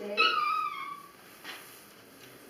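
A dog gives one high-pitched whine lasting under a second, falling slightly in pitch.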